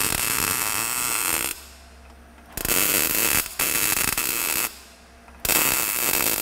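Wire-feed (MIG) welder arc crackling as a steel repair piece is welded into the rusted unibody at a subframe mount, in several runs of a second or two with short pauses between.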